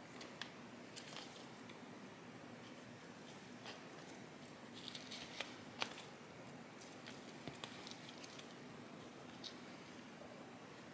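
Faint rustling of leaves and soil with a few small clicks as fingers press rooted philodendron cuttings into potting mix in a pot, over a low steady hum.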